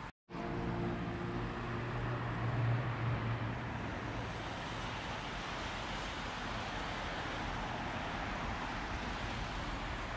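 Road traffic passing on a main road, tyres hissing on the wet surface. In the first few seconds one vehicle's engine hum swells and fades as it goes by, then the steady wash of passing cars carries on.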